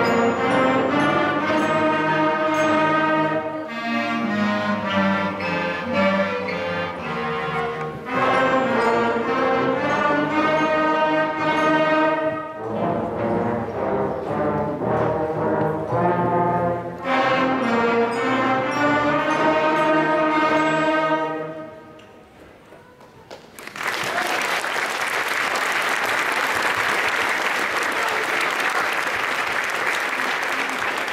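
School concert band of flutes and brass, including trombones and a tuba, playing the closing phrases of a piece, which ends about 21 seconds in. After a short pause, the audience applauds steadily.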